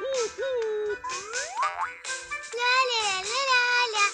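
Playful children's cartoon music with wavering, gliding tones and quick rising boing-like sweeps.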